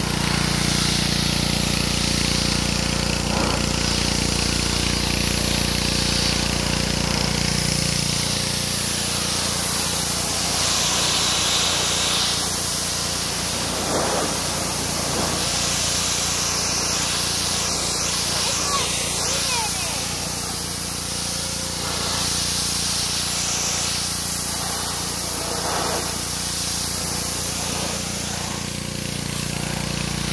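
Honda GCV160 single-cylinder pressure washer with a Simpson pump running steadily, its high-pressure water jet hissing as it strikes and strips wet wooden trailer boards. The engine hum fades lower about eight seconds in, leaving mostly the spray.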